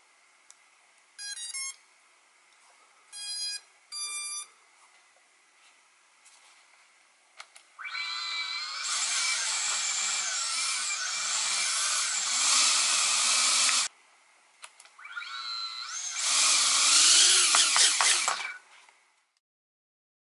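A few short electronic beeps, then a UR65 tiny whoop's small motors and ducted propellers whining as they are throttled up, rising in pitch. The whine cuts off suddenly, then spins up again louder for a few seconds and stops.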